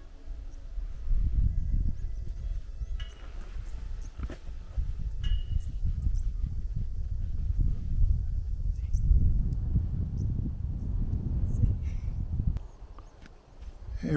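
Wind buffeting an open-air microphone: an uneven low rumble that starts about a second in and dies away shortly before the end, with a couple of faint high chirps about three and five seconds in.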